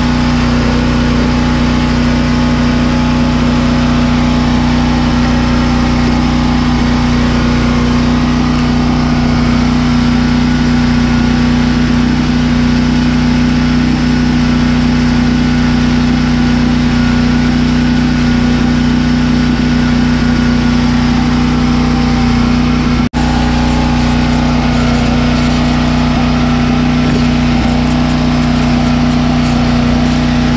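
An engine running steadily at constant speed, with a loud, even hum that does not change in pitch, breaking off briefly about 23 seconds in.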